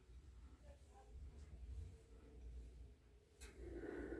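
Near silence: room tone with a faint low hum and a soft click near the end.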